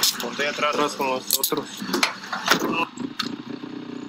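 Voices, with sharp clicks and jangles, over the first part. Then from about three seconds in, a Honda dirt bike engine idles steadily.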